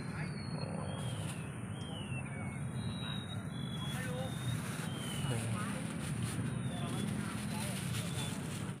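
Outdoor pond-side ambience: a steady low rumble with faint, indistinct distant voices, a few short high chirps and a thin steady high-pitched whine.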